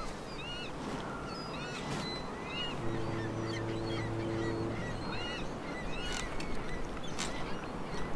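Birds calling over a steady rushing background, many short chirps coming one after another. A low steady horn-like tone sounds for about two seconds near the middle.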